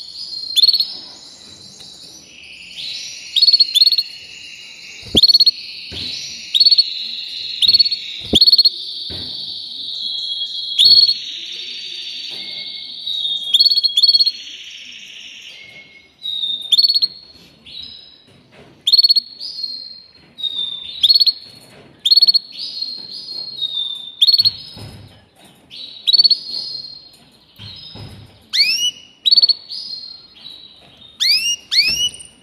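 Canary singing: long rolling trills held for several seconds, with sharp chirped notes cutting through them. About halfway through, the song breaks into shorter separate phrases, and it ends in quick rising sweeps.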